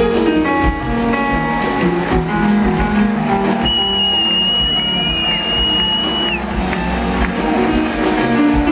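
Live jazz band playing an instrumental passage, with keyboards and plucked guitar-like notes over a bass line, and one long held high note from about the middle of the passage for nearly three seconds.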